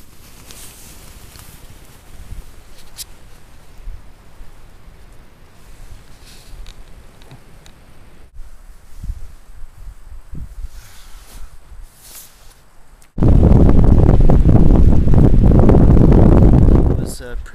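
Gusty wind rumbling and hissing on the microphone, with leaves rustling. About three seconds before the end a strong gust hits the microphone and turns into very loud, overloading wind noise.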